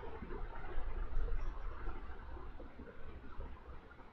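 Faint steady background noise: a low rumble with hiss, gradually fading, with no distinct events.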